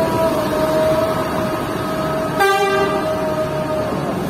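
Coach bus pulling away under power, with a steady pitched tone running over the engine noise. A short horn toot sounds about two and a half seconds in.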